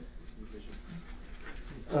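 Pause in a man's speech: the room's steady hiss and low hum, with a couple of faint brief low sounds. His voice starts again near the end.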